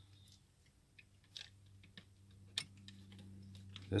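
Faint scattered clicks of a small steel retainer bolt knocking against the metal of a TD-9 steering clutch as it is held by the fingers and lined up with its threaded hole, over a low steady hum.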